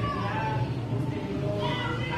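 A woman talking in Spanish, her words unclear, with a high, rising and falling voice.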